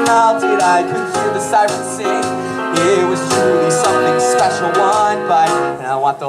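A show tune: a voice singing over instrumental backing music.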